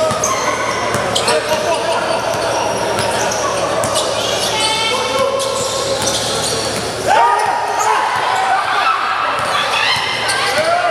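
A basketball dribbled on an indoor court, each bounce echoing in a large hall, over the shouts and chatter of players and spectators. A loud shout rises about seven seconds in.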